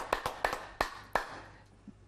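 Hand clapping from a few people, irregular and thinning out, dying away about a second and a half in.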